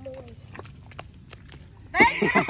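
Feet and legs wading through wet, sloppy mud: faint squelching with a few sharp wet clicks, about three a second. A brief faint voice comes at the very start.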